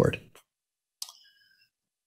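Dead silence broken about a second in by a single short click that rings briefly at a few high pitches.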